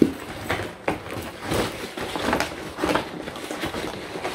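Handling noise from a quilted handbag with a metal chain being turned over and opened: irregular rustles and light clicks, several short sharp ones spread through the stretch.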